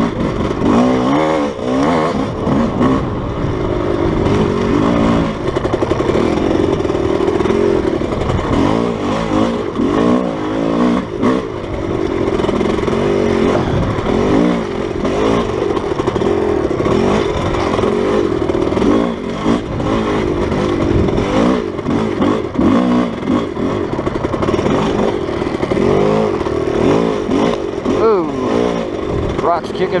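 Off-road dirt bike engine running hard on a trail, its pitch rising and falling continuously as the throttle is rolled on and off, with rough low rumble from the ride.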